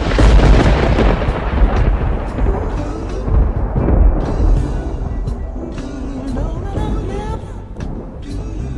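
A thunderclap sound effect: a sudden loud crash with a deep rumble that dies away over about five seconds, mixed over music that comes back to the fore near the end.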